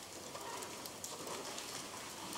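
Faint steady room noise in a hall with microphones, with no distinct event, during a pause between speakers.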